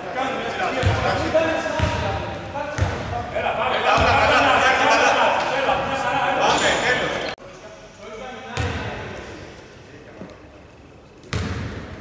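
A basketball bouncing on a hardwood court, about once a second, with voices echoing around a large gym. The sound drops off suddenly a little past halfway, and one more thud follows in the quieter stretch.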